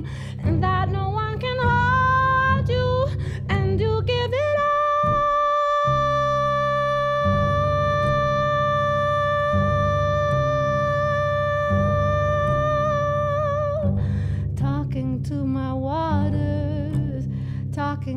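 A woman singing over her own plucked upright bass line. She sings short sliding phrases, holds one long note for about ten seconds from about four seconds in, then returns to shorter phrases.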